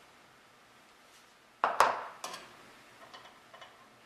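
Small handling clatter and clicks of metal parts and a grease tube as a stainless steel bolt is greased and set into the outboard's water pump cover: one sharp clatter about a second and a half in, then a few lighter clicks.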